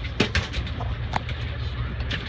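Steady low drone of the fishing boat's engine idling, with a few short sharp clicks and knocks on deck.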